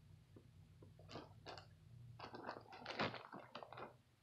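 Faint handling noises: light clicks and plastic rustling as a zip-top plastic bag of milk is picked up, growing busier over the last two seconds.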